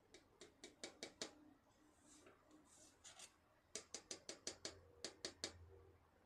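Faint quick runs of light clicks, about five a second, with a soft scraping in between: paint being mixed and worked on a palette with a tool.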